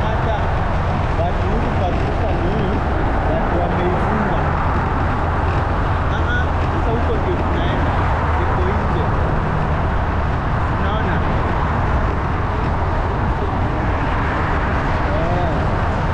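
A motorbike riding steadily along a road, heard from a camera mounted on the bike: continuous engine and wind rumble with road traffic around it.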